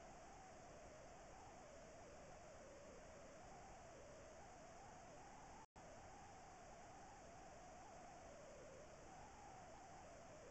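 Near silence: a faint steady hiss with a faint wavering hum under it, broken by a momentary dropout a little past halfway.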